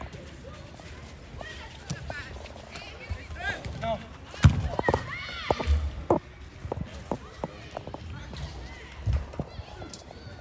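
Players shouting and calling to each other during a small-sided soccer game on turf. About four and a half seconds in comes a loud thud of the ball being struck, with smaller thuds later.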